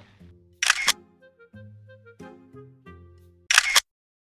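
Quiet background music with slow, sustained notes, cut across twice by a loud camera-shutter sound effect about three seconds apart. All sound cuts off suddenly just before the end.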